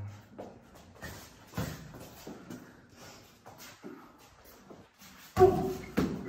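Boxing sparring: scattered light thuds and shuffles of gloves and footwork, then one much louder sudden hit near the end with a short vocal burst over it.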